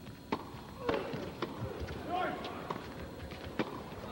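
Tennis rackets striking the ball in a quick doubles exchange: sharp pops about a third of a second in, again at about one second and a second and a half, and once more near the end.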